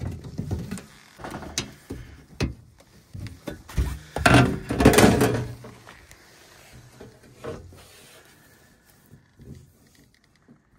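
Plastic thumb knobs on a gas furnace's sheet-metal door panel being turned and the panel handled: a series of clicks and knocks, with a longer, louder clatter about four seconds in that lasts over a second, then quieter handling.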